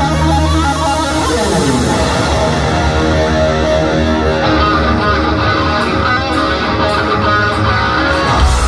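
Heavy metal band playing live through a large PA, heard from within the crowd: distorted electric guitars with bass and drums, and a falling glide in pitch about a second in.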